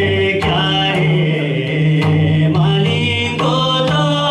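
A man singing a Nepali madale folk song in long held notes, accompanied by the strokes of a madal, a two-headed Nepali hand drum.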